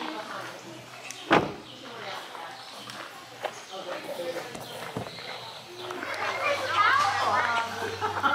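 A group of children's and adults' voices chattering, livelier near the end, with one sharp knock a little over a second in.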